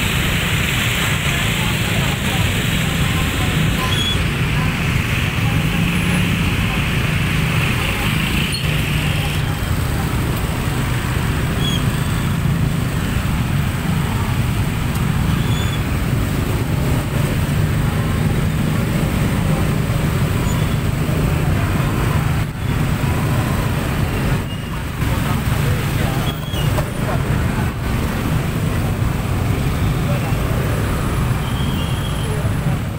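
Motor scooters running at low speed in a dense, slow-moving traffic jam: a steady, unbroken engine hum.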